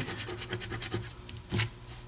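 A coin scraping the scratch-off coating on a lottery ticket: a quick run of short scratching strokes, then one louder stroke about one and a half seconds in.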